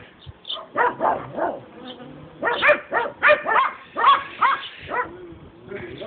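A dog whining in short, high-pitched yelps that rise and fall in pitch, a few about a second in and a longer run of them from about two and a half to five seconds in.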